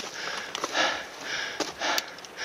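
A person breathing hard and fast close to the microphone, about two breaths a second, with a few sharp clicks, likely footsteps or gear, among them.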